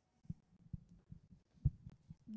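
A handful of soft, low thumps spaced irregularly, the loudest about 1.7 s in: handling noise from a handheld microphone being passed over and taken in hand.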